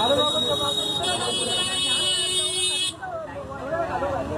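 A high-pitched vehicle horn sounding steadily for about two seconds and cutting off suddenly, over people talking in the background.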